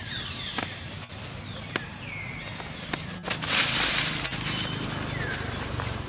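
Macaques running and scuffling over dry leaf litter. There is a loud rustling burst about three and a half seconds in, a few sharp clicks, and several short high calls that fall in pitch.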